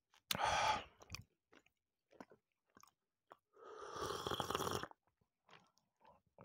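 Close-miked chewing of a chocolate bar with whole hazelnuts and almonds: small wet mouth clicks, with a louder burst shortly after the start and a longer one of about a second past the middle.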